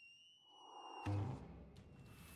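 A steady, high whistled note from the cartoon's soundtrack, rising slightly and growing fainter after about a second. A short low thud comes about a second in.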